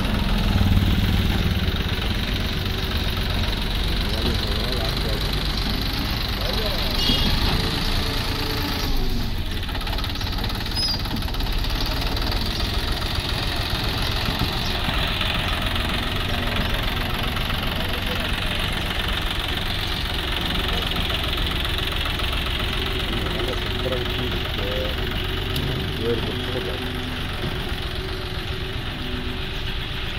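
John Deere 5050 E tractor's three-cylinder diesel engine running steadily, working a front dozer blade to level soil.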